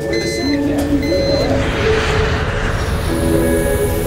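Two short electronic beeps about a second apart over a low rumble and background music, with a hiss that swells and fades in the middle.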